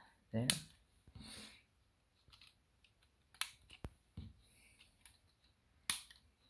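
Plastic LEGO pieces clicking as a minifigure lightsaber is pressed into a clip on the model. There are a few sharp clicks with quiet handling between them, and the loudest comes near the end.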